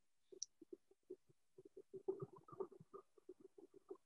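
Faint, irregular soft clicks and knocks, many in quick succession and thickest around two seconds in, with one brief high chirp near the start.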